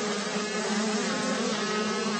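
Two 85cc two-stroke motocross bikes, a GasGas and a KTM, racing together, their engines running at a steady pitch that wavers slightly.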